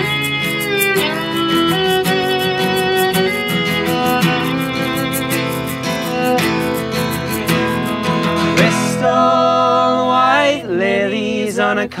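Acoustic folk instrumental passage: a violin plays the melody over a steadily strummed acoustic guitar, with singing coming back in near the end.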